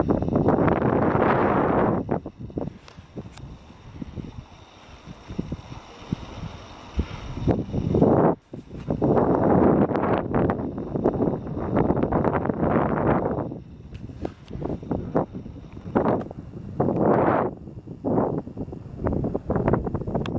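Wind buffeting the camera's microphone in loud gusts: one at the start, a long one in the middle and shorter ones later, with light knocks and rattles between them.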